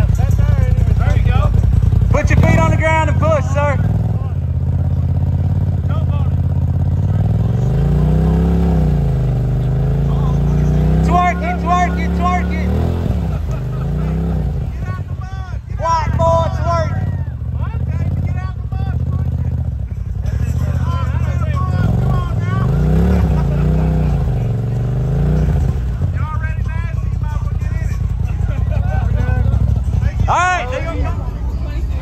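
Side-by-side UTV engine running and revving up and down in several slow swells while the machine sits stuck deep in mud, with voices over it.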